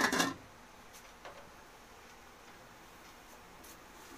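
Aluminium pot lid clinking as it is set onto an aluminium cooking pot, a few quick metallic clinks right at the start. After that only a faint steady hiss with one or two small ticks.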